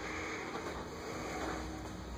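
Steady low-level room noise with a low hum, with no distinct event standing out.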